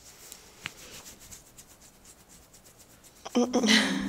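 A hand rubbing and scratching a dog's belly fur: faint, quick, repeated rubbing strokes. Near the end a short laugh breaks in.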